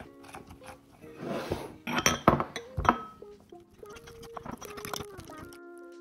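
A spoon stirring flour and sugar in a mug, clinking and scraping against the sides, loudest about two to three seconds in. Background music with held tones plays underneath, and the stirring stops shortly before the end, leaving only the music.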